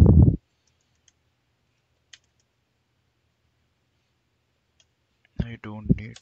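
A few faint, widely spaced computer keyboard keystrokes while code is typed. A short, louder low rumble opens the stretch, and a man's speech starts near the end.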